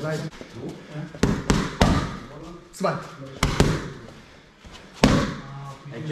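Boxing gloves punching focus mitts: a series of sharp smacks, several in quick pairs, as combinations land on the pads, with a coach calling out the combination numbers.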